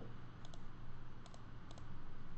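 Computer mouse clicking: three quick pairs of short clicks spread over two seconds.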